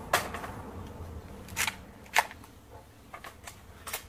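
Handling noise: about six light clicks and knocks, irregularly spaced, as a chronograph on a hand-held pole is moved into place in front of the shooter.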